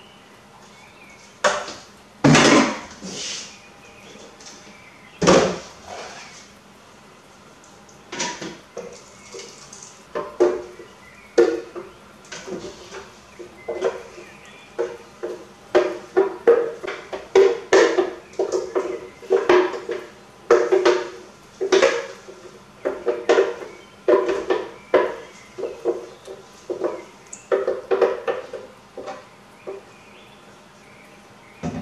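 A spatula scraping and knocking against a glass blender jar as thick blended chili paste is scraped out into a pot. A few separate loud knocks come in the first seconds, then repeated short scraping strokes follow about one to two a second through the rest.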